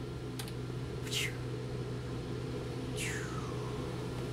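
Powered sliding interior door of a tour bus opening at the press of a button, with two falling whooshes about a second in and near the end, over the bus's steady low mechanical hum.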